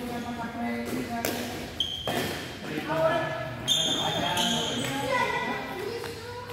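Badminton rackets hitting a shuttlecock several times during a rally, with people's voices talking and calling around the court.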